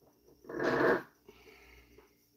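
A man's single short, heavy breath out, a sigh lasting about half a second.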